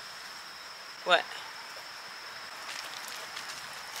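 A steady, high-pitched insect trill running without a break, with a woman's single spoken "What?" about a second in.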